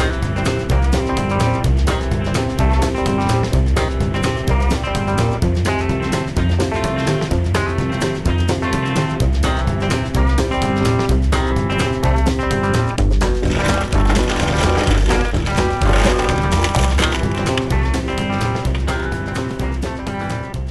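Loud instrumental background music with a steady beat and a repeating bass line.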